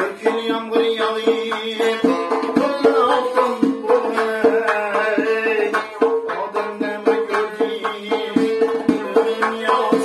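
Uzbek (Khorezmian) folk music: a doira frame drum struck in a steady rhythm of sharp hand strokes, accompanying a plucked long-necked tar, with a man singing along.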